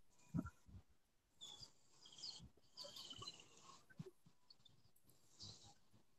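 Near silence: faint room noise with a few soft clicks.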